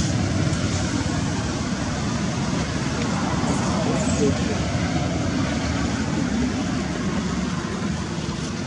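Steady background noise, strongest in the low range, with faint murmured voices.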